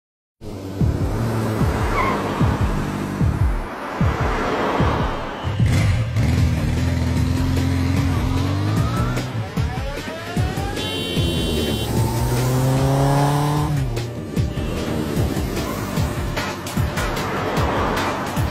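Motorcycle and car engines running and revving, with tyres squealing, over background music; the sound starts about half a second in.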